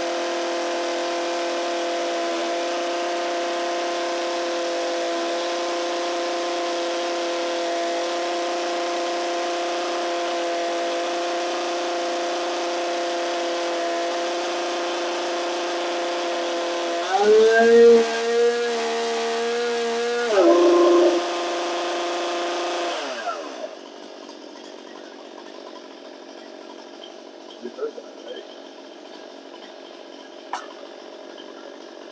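Stihl MS 261 C chainsaw's two-stroke engine running at a steady speed with the chain brake on, holding its final M-Tronic setting after recalibration. Its note drops and changes for a few seconds about 17 seconds in, then returns briefly, and the engine is shut off about 23 seconds in.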